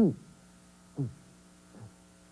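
A woman's voice crying "ooh" in a falling pitch, then a shorter falling "ooh" about a second in and a faint one near the end, over a faint steady hum.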